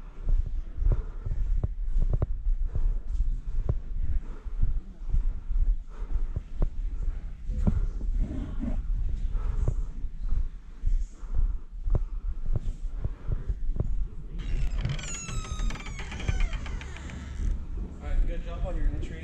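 Footsteps, knocks and clothing rub picked up by a body-worn camera moving through rooms, over a steady low rumble. About fourteen seconds in, a high wavering squeak lasts a few seconds.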